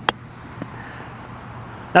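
A single crisp click of a golf club face striking a Seed SD-05 urethane-covered golf ball on a chip shot, just after the start.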